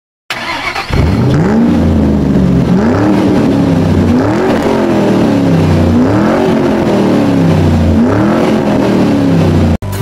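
A car engine revving over and over, starting about a second in, its pitch climbing and dropping back about five times; it cuts off suddenly near the end.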